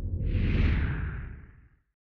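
Whoosh sound effect over a low rumble for an animated logo intro, swelling a moment in and fading out within about a second and a half.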